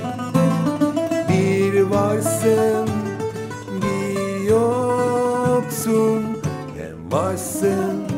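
Bouzouki and acoustic guitar playing a Turkish song together, the guitar strummed under the bouzouki's plucked melody, with a man singing long held notes.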